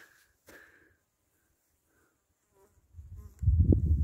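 Mostly quiet for about three seconds, with a faint brief buzz. Then a loud low rumble builds on the phone's microphone near the end.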